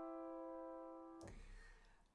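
Grand piano chord, the closing C major chord in first inversion, ringing out and slowly fading, then damped about a second in as the keys are released, with a soft low thump.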